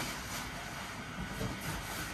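Steady whirring of an inflatable costume's battery blower fan keeping the suit inflated, with brief rustles of the inflated fabric as the wearer turns around.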